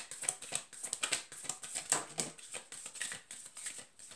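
A deck of oracle cards being shuffled in the hands: a rapid, irregular run of light clicks and slaps as the cards slide over one another.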